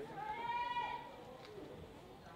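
A high-pitched yell: one held cry of just under a second near the start, over the faint background of a large hall.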